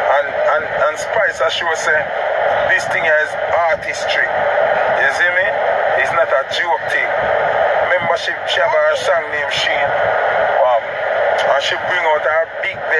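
A man talking without pause, his voice thin and radio-like with little low end.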